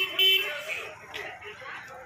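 A vehicle horn sounding a steady tone that stops about half a second in, followed by quieter street noise with faint, indistinct voices.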